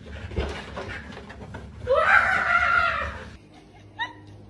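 A single loud, high cry that glides up at its start and is then held for about a second and a half before breaking off.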